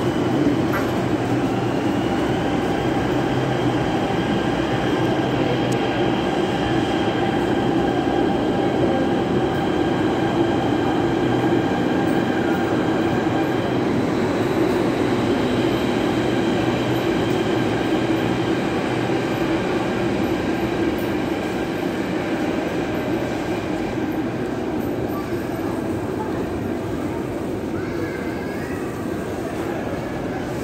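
Metro train running through the station: a steady rumble with faint high whines over it, easing slightly near the end.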